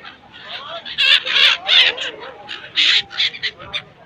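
A flock of gulls calling harshly in loud bursts, the loudest a second or so in and again near three seconds, with people's voices mixed in.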